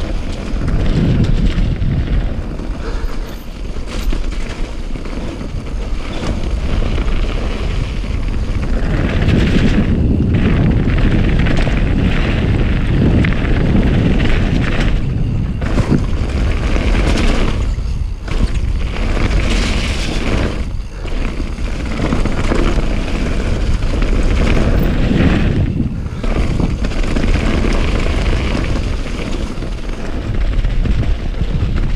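Wind rushing and buffeting on a bike-mounted action camera's microphone, with the rumble of tyres rolling over a loose gravel trail at speed. It eases briefly a few times.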